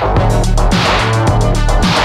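Electronic synthpunk music played on synthesizers: a steady bass and a driving beat, with a falling-pitch thump and a swelling hiss that repeat a little more than once a second.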